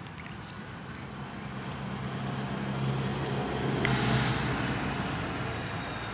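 A motor vehicle passing close by: a low engine hum builds, with a broad rushing noise joining about four seconds in, then easing slightly.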